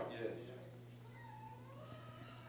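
A pause in speech: quiet room tone with a low steady hum from the sound system. About a second in there is a faint drawn-out voice-like sound, typical of a congregation member murmuring.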